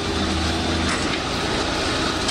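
Excavator diesel engine running steadily under load as its bucket breaks up brick and concrete walls, with a short crack of masonry about a second in.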